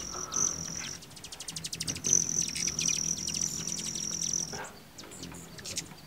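Hummingbirds flying close by: a high, thin whistling trill, broken about a second in by a burst of rapid ticking, with a faint low hum swelling underneath.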